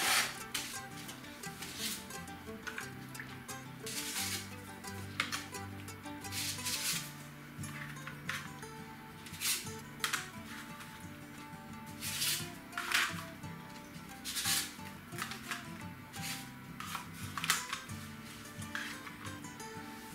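Background music with low held chords, over about a dozen irregular crisp clicks and rustles of dry lasagna sheets being laid into a ceramic baking dish.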